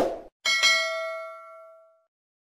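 Subscribe-button animation sound effect: a short click-like burst, then, about half a second in, a bright bell ding that rings with several tones and fades away over about a second and a half.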